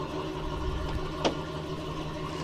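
A steady low hum over a rumbling background, with one sharp click about a second and a quarter in.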